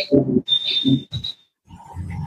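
A man's wordless vocal sounds in several short bursts, with a brief high whistle-like tone about half a second in.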